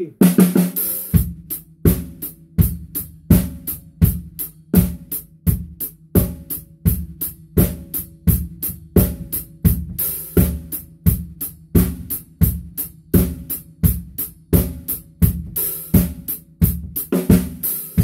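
Drum kit played alone at a slow, mellow tempo: snare, bass drum and hi-hat in a steady rock groove, with a cymbal crash about ten seconds in and again near the end. This take leaves out a double that the part calls for.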